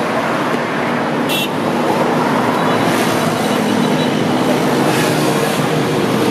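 A truck engine running steadily: a low, even drone with a steady hum that grows a little stronger about a second and a half in.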